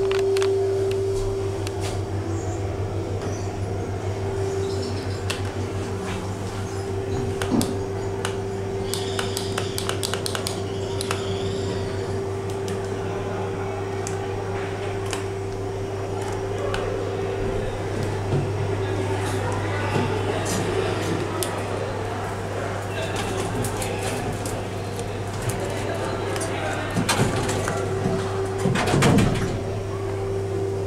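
Background crowd chatter over a steady hum inside a 1998 KONE hydraulic lift car, its doors standing open. Near the end the doors close with a few loud thuds, the loudest just before the car starts to move.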